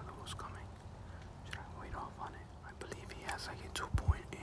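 A man whispering quietly, with scattered soft clicks and a sharp low thump at the very end.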